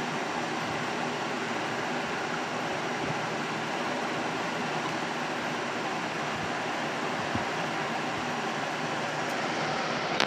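Steady, even background noise, a constant rush with a faint low hum and no distinct events.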